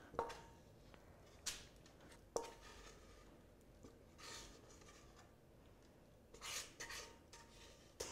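Brownie batter being spooned out of a stainless steel mixer bowl into a baking tin: faint scraping and a few light clicks of the utensil against the bowl.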